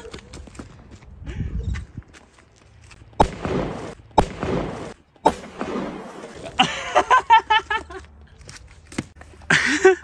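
Three loud firecracker bangs about a second apart, starting about three seconds in, each followed by a short noisy rumble as it dies away.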